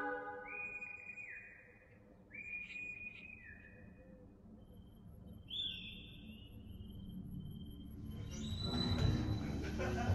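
Faint, high whistle-like tones: four short ones in the first few seconds, each held and then dropping in pitch, and a higher falling one about halfway through. Near the end, low sound swells in as music begins.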